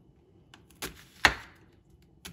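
Kitchen knife chopping a white onion on a wooden cutting board: a light tap a little under a second in, then one sharp knock of the blade against the board.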